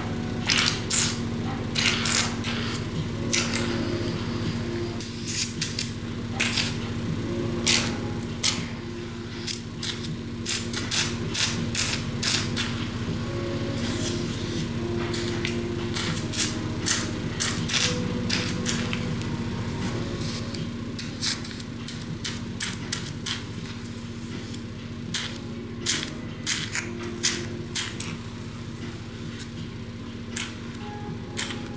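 Facial treatment machine running with a steady hum, while its handpiece makes irregular sharp clicks, a few each second, as it is worked over the skin.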